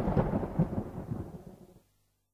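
A low, rumbling noise with no tune in it, like a thunder or explosion tail, fading steadily at the close of a dance-pop recording and gone just before two seconds in.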